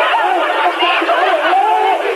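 Several voices shouting and talking over one another at once, a tangle of overlapping cries with no clear words, on a thin old television soundtrack with no low end.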